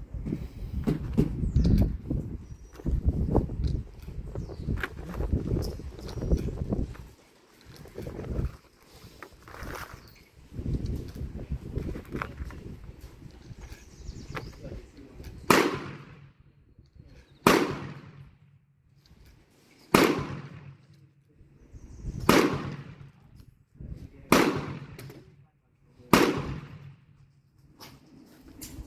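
Handling rumble and small clicks for the first several seconds, then six gunshots about two seconds apart, each followed by a short ringing echo under the covered firing line.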